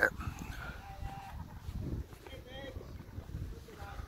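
Low wind rumble on the microphone, with a few faint, short voice-like sounds about a second in and again near the middle.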